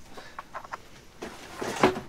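Faint knocks, clicks and rustling as objects are handled and shifted among cardboard boxes and old furniture, with a louder sharp knock near the end.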